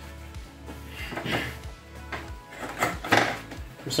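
Scattered light knocks and clinks of a removed carburetor and intake elbow assembly being handled, over quiet background music.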